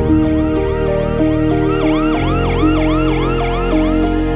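A fast, warbling, siren-like tone, rising and falling about three times a second, over background music. It grows louder about halfway through and stops at the end.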